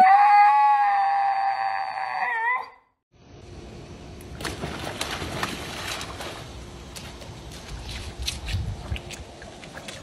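A dog gives one long, high, held howl-like call of about two and a half seconds that wavers as it ends. Then water splashing in a swimming pool as dogs jump and paddle in it, a steady wash of water with several sharper splashes.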